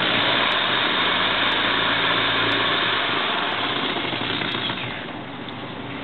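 A power tool spinning an induction motor's shaft through a three-jaw chuck, making a loud, steady whirring noise that starts suddenly and slowly fades over the last two seconds. The spun motor is being driven as a generator so that the phase difference between its two windings can be seen.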